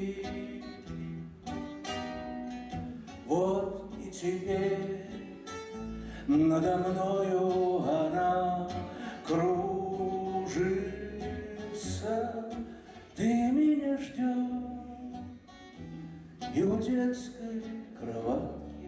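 A man singing to his own acoustic guitar: long held notes, each phrase starting with an upward slide, over a steady plucked accompaniment.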